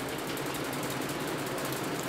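A pause in speech filled by steady room noise with a faint, fast, even mechanical flutter.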